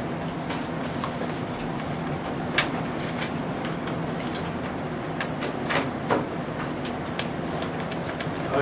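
Papers being handled at a table: scattered short rustles and taps over a steady low background hum.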